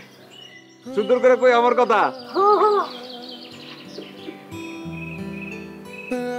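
Background music from a drama score: a voice wavering in pitch for about a second, a short rising-and-falling vocal phrase, then long held notes.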